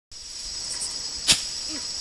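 Steady high-pitched chirring of insects in tall summer grass, with a single sharp click just over a second in.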